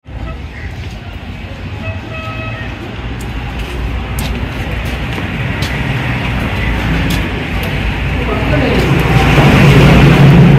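Street traffic noise with a low rumble, and a brief horn toot about two seconds in. Voices grow louder near the end.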